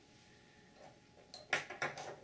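Quiet room tone, then a few light, sharp clicks and taps in the last half second as copper wire and a steel hook are handled at a bench vise.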